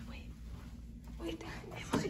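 Hushed, whispered voices, with a single sharp click near the end.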